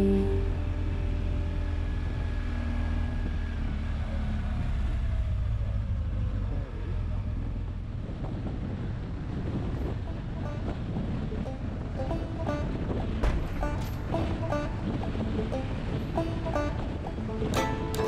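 Motorcycle riding noise: wind rushing over the bike-mounted camera's microphone, with engine and road rumble underneath. Plucked-string music fades in about halfway through and grows louder near the end.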